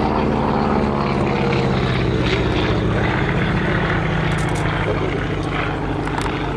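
Boeing P-26 Peashooter's Pratt & Whitney R-1340 Wasp nine-cylinder radial engine and propeller running steadily in flight, its pitch falling over the first few seconds as the aircraft passes and moves away.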